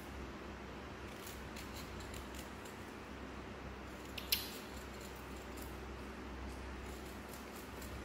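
Small kitchen knife cutting and peeling the skin off a persimmon: faint repeated cutting clicks and scrapes, with one sharper click about four seconds in, over a low steady hum.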